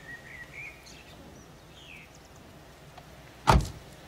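A car door shutting once: a single heavy thump about three and a half seconds in, after a few faint high chirps.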